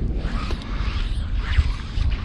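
Wind rumbling on the microphone, with the light rasp of fly line sliding through the rod guides as a fly rod is cast.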